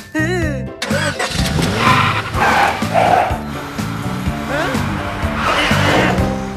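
Cartoon soundtrack: a small car's engine starts and revs over steady background music, with quick wavering cartoon sound effects in the first second.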